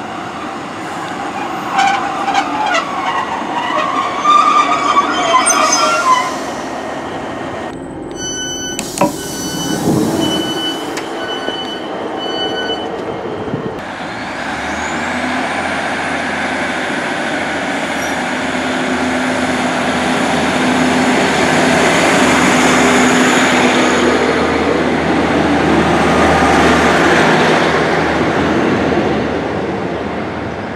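Class 150 Sprinter diesel multiple unit with squealing brakes as it draws into the platform. A run of short beeps follows about ten seconds in. Then its diesel engines run up, with a rising whine, growing louder as the train pulls away.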